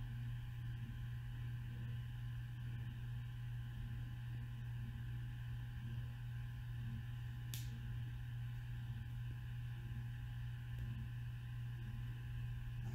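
Steady low background hum with a few faint steady tones above it, and one short click about seven and a half seconds in.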